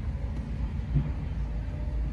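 2012 Ford Focus's 2.0-litre four-cylinder engine idling at about 1,000 rpm, a steady low rumble heard from inside the cabin, with one short low thump about halfway through.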